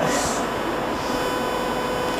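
Steady electrical hum and hiss from a microphone and sound-system chain, with a faint steady mid-pitched tone running through it. A short breathy hiss comes at the very start.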